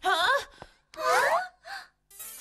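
A cartoon character's voice giving three short, wordless exclamations, each with a bending pitch, with brief pauses between them.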